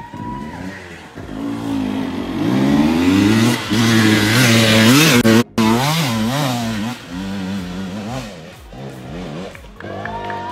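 Dirt bike engine revving hard on a steep dirt climb, its pitch rising and falling repeatedly with the throttle. It is loudest in the middle, with a very short break in the sound just past halfway.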